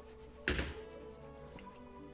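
A single dull thunk, like something knocked or set down on a desk, about half a second in, over faint background music.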